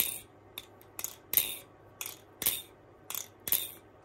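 Arm Shark Tsunami balisong being flipped: a string of sharp metallic clicks and rattles, about two a second, as the handles swing on their pivots. The handles have no weights in, and the pivots run on old oil that is not dry but not freshly lubed.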